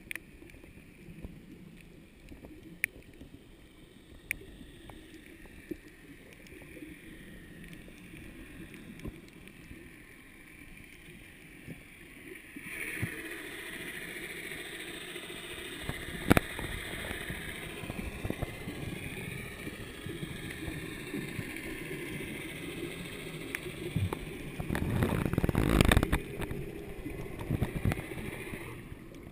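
Underwater sound: a low rush of moving water with scattered sharp clicks. About halfway through it grows louder, with a wavering higher whine joining in, and it swells louder again near the end.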